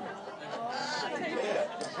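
Faint, indistinct talking, too low to make out words.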